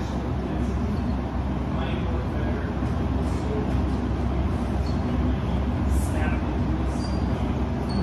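Steady low rumble of a large hall with indistinct voices of onlookers, and a few faint light clicks and taps.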